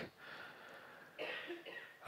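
A faint, short cough a little over a second in, against quiet room tone.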